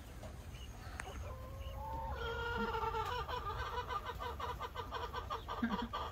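Chicken clucking: from about two seconds in, a short call and then a rapid run of clucks, several a second, over a low rumble.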